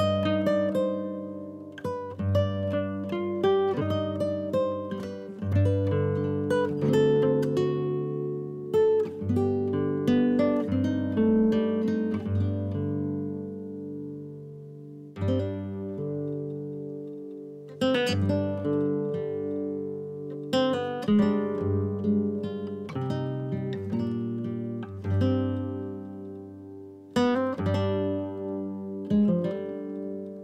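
Background music on acoustic guitar: a steady run of plucked notes and strummed chords, each ringing out and fading.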